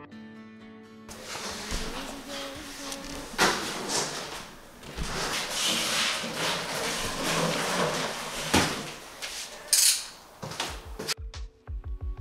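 Cardboard boxes and plastic packaging being handled and moved about, a continuous rustling and scraping broken by several sharp knocks. Background music fades out at the start and comes back near the end.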